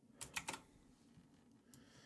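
Three quick clicks of computer keyboard keys in the first half-second, as windows are switched with the task switcher, then near silence.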